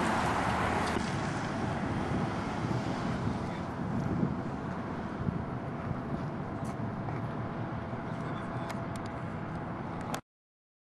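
Steady traffic and car noise, a constant rumble with a few faint clicks near the end.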